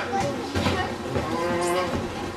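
Voices in a large hall, with a drawn-out, steady-pitched vocal sound held for about half a second in the second half.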